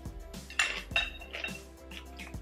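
Chopsticks clinking against a ceramic bowl twice, about half a second and a second in, each clink ringing briefly. Soft background music plays underneath.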